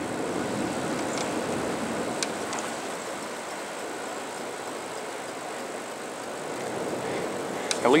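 Steady rushing noise of a bicycle moving along a city street, tyres on asphalt and air going past, with a few faint clicks.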